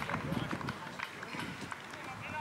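Football pitch ambience: faint, distant shouts of players with irregular footfalls of players running on the grass.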